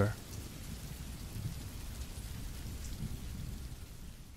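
Dark ambient background track left on its own after the narration: a steady low rumble under a faint hiss, with no clear tune, beginning to fade near the end.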